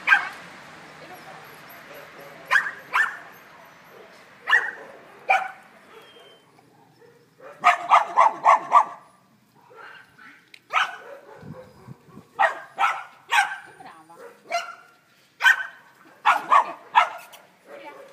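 Dogs barking in short, sharp barks, some single and some in quick runs, with a run of about five near the middle.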